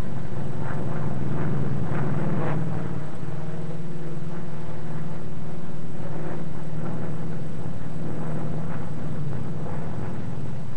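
Grumman F8F Bearcat's radial piston engine running steadily in flight, a continuous loud propeller drone.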